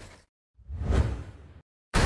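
Whoosh sound effects in an animated title sequence: one whoosh fades out just after the start, a second swells and dies away about a second in, and a sudden loud hit arrives right at the end.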